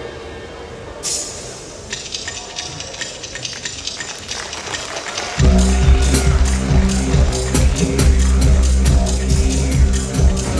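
Acoustic drum kit played over electronic backing music: a cymbal crash about a second in, then rhythmic hits, and a heavy bass backing track comes in about five seconds in.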